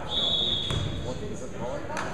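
Referee's whistle blown once, a steady high tone of just over a second, in a large gym. A ball bounces on the hardwood court partway through, under voices in the hall.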